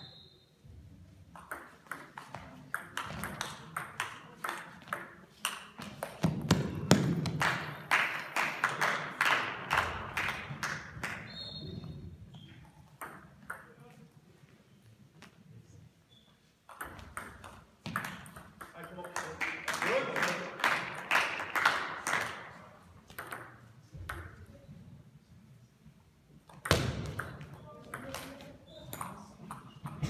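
Table tennis rallies: the ball clicking back and forth off bats and table in quick exchanges, twice. Each rally is followed by a louder burst of clapping and voices from spectators.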